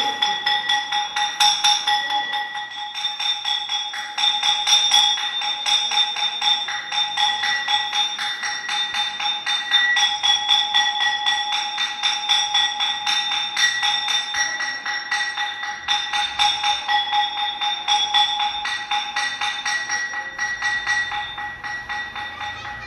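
Temple bell rung rapidly and continuously during aarti, a stream of quick, even strokes over a steady metallic ring.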